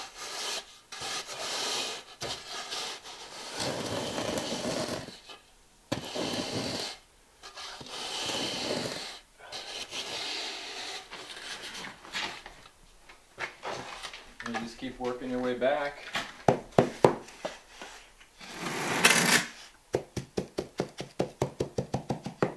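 An aluminium box-edge straightedge scraping across sand-and-cement shower-floor mortar as it is screeded, in long gritty strokes. Near the end comes a quick run of sharp taps.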